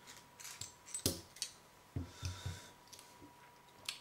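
Light metallic clicks, a brief scrape and a few soft knocks from a brass Lockwood 334 padlock being taken apart by hand and a screwdriver being set down on a rubber mat.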